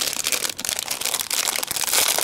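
Clear cellophane packaging crinkling in the hands, a dense irregular run of small crackles, as die-cut paper flower pieces are picked out of it.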